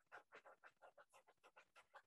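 Paintbrush scrubbing acrylic paint onto canvas in quick, short strokes, about six a second, faint.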